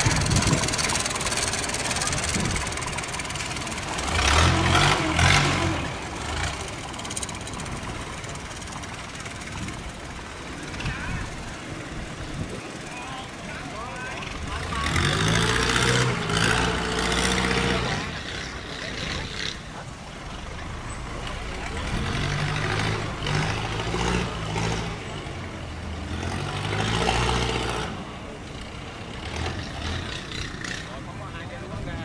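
Long-tail boat engines on wooden cargo boats running. They swell louder several times as boats pass close by, around five seconds in, after about fifteen seconds and again in the second half.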